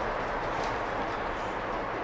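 Steady hiss of rain falling.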